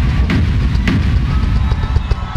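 Live band music with heavy, steady bass and sharp drum-kit hits, and no vocals at this moment.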